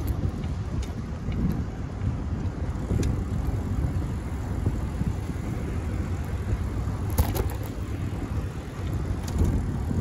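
Low, steady wind rumble on the microphone with road noise while riding a bicycle along a city street. A short sharp click comes about seven seconds in.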